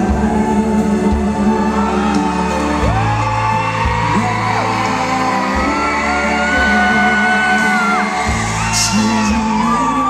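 Male singer performing a slow ballad live, holding long sung notes and slides over band accompaniment, heard in the echo of a large arena, with fans whooping and yelling over it.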